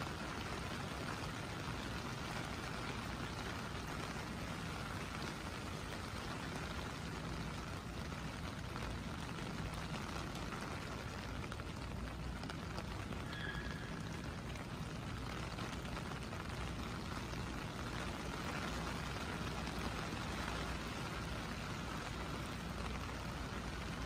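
Steady rain falling on a wet city street, an even hiss of rain with a low rumble underneath.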